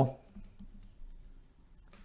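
Stylus on a tablet screen while handwriting, giving a few faint clicks and taps.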